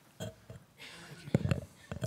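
Handling noise on a table gooseneck microphone as it is adjusted: irregular low bumps and rubbing, with the loudest sharp knock a little past halfway.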